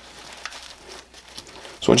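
Nylon fabric rustling and scraping as a pouch's MOLLE straps are pulled through the webbing loops of a vest carrier, with a few faint ticks.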